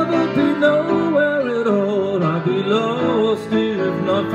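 A man singing a slow ballad to his own grand piano accompaniment, his voice drawing out long, wavering notes over sustained piano chords.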